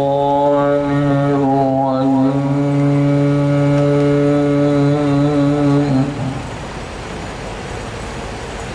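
A man's voice holding one long chanted note in a religious recitation, nearly level in pitch, for about six seconds before breaking off, leaving a steady hiss.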